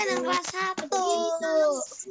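A child's voice in drawn-out, sing-song phrases, held and gliding in pitch, heard over a video-call connection.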